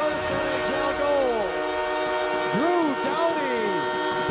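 Arena goal horn sounding a steady, loud chord right after a Kings goal, with the crowd shouting and cheering over it.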